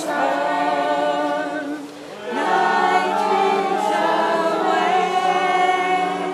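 A group of voices singing together without instruments, in long held notes, with a short break about two seconds in.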